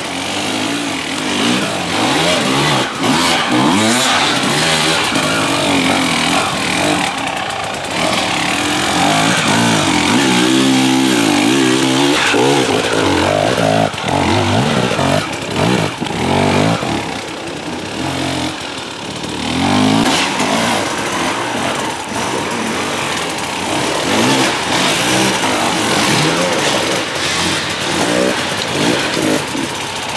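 Enduro dirt bike engines revving hard under load on a steep climb. The pitch surges up and drops again over and over as the throttle is blipped.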